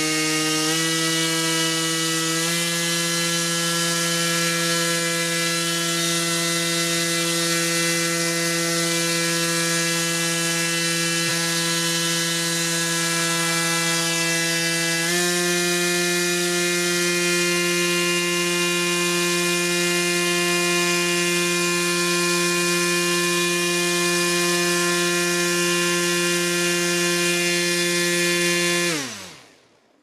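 RC propeller spun by an electric motor on a thrust test rig, giving a loud, steady pitched drone with a rush of air. The pitch steps up three times as the throttle is raised: about a second in, a couple of seconds in, and about halfway. Near the end the pitch drops quickly as the propeller spins down and stops.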